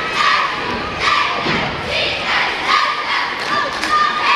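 Cheerleading squad shouting a cheer in unison, in loud rhythmic bursts about once a second, with thumps from the routine and crowd noise.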